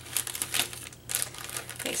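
A clear plastic bag and the die-cut paper pieces inside it crinkling and rustling as they are handled, in short irregular crackles.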